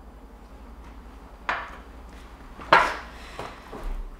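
A dish being handled: two sharp clatters, the second louder, then a few softer knocks near the end.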